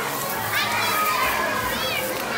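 Children playing: a steady background of kids' voices, with two short high squeals, one about half a second in and one near the end.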